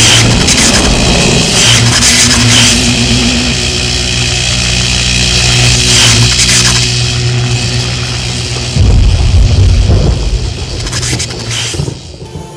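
Film sound effects of electrical sparks crackling and hissing over a steady low hum, with a deep boom about nine seconds in.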